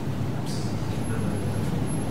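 Steady low hum of room background noise with no speech, and a thin high whine that starts about halfway through.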